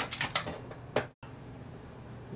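A quick run of light clicks and knocks from the hard plastic battery and bottom cover of an iBook G3 clamshell being handled and set down. The knocks break off a little after a second into a faint steady hiss.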